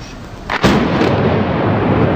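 Demolition explosive charges going off on a steel arch bridge: a sudden loud blast about half a second in, followed by a continuing rumble. These are the charges that failed to bring the bridge down.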